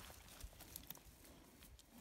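Near silence, with a few faint soft rustles of straw under a hand working on a newborn lamb.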